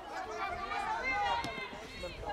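Several voices calling and shouting at once, overlapping and not forming clear words, from players and people around a football pitch.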